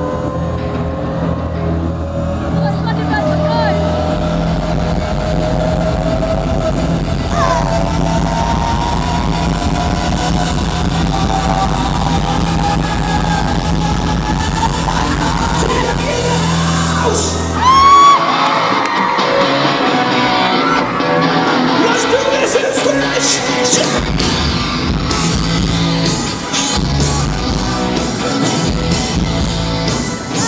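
Live rock band building tension: a low sustained drone under a slowly rising held tone, then a loud hit about eighteen seconds in, after which the full band comes in with drums.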